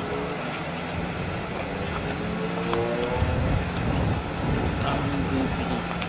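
A motor vehicle passing on the road: its engine note rises over a second or two, then a low rumble swells and fades, over a steady low hum.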